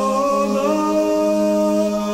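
Background music of unaccompanied voices humming a slow melody over a steady held low note; the upper voices move to new notes about half a second in.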